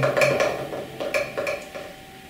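Sparse clinking, metallic-sounding percussive hits with a short ringing tone, part of the piece's musical backing, coming a few at a time and dying away near the end.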